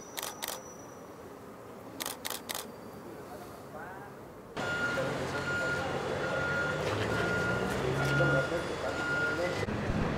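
A few camera shutter clicks in a quiet moment, a single one and then three in quick succession. About halfway through, a reversing alarm starts beeping steadily, roughly every half second, over background voices and street noise.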